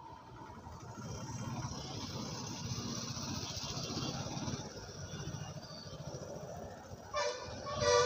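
Road traffic: the engines of passing auto-rickshaws, a bus and motorcycles run steadily, then a vehicle horn honks twice near the end.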